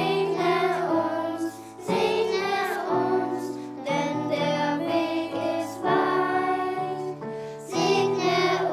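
A children's choir singing together, accompanied by a keyboard, with a new sung phrase beginning about every two seconds.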